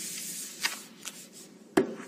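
A few sharp clicks over a faint hiss, the loudest click near the end, like handling noise from a desk microphone.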